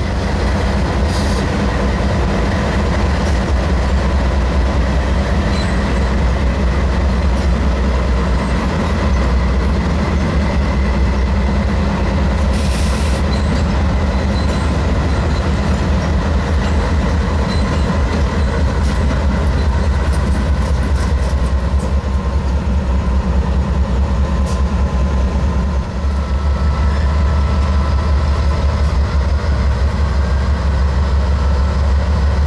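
Several BNSF diesel-electric locomotives, GE C44-9W and EMD four-axle units, rolling past slowly at close range. Their engines give a heavy, steady low rumble, with scattered clicks of the wheels over the rail joints and switches.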